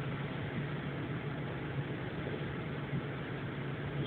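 Steady engine drone of a city bus heard from inside the passenger cabin, a constant low hum under an even rumble.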